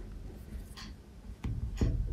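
A paintbrush scraping and dabbing oil paint on canvas: two short, scratchy strokes about a second apart.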